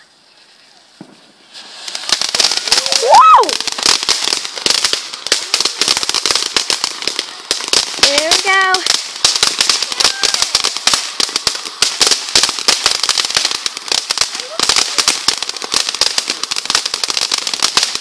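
Ground fountain firework spraying sparks with dense, rapid crackling that starts about a second and a half in and keeps on.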